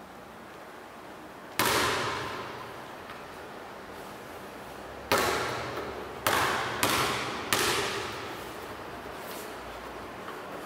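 A basketball bouncing hard on a tiled floor five times at uneven intervals, once early and then four in quick succession, each bounce ringing on in a reverberant hall.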